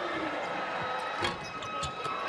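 A basketball bounced twice on the hardwood court, about half a second apart, over steady arena crowd noise.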